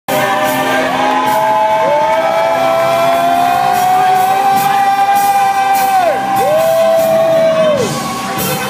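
Loud gospel praise-break music with drums, over which a voice holds a long high note for several seconds, breaks off with a falling slide, and then holds it again.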